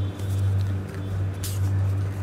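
Steady low hum that swells and fades slightly, with a brief scraping handling noise about one and a half seconds in.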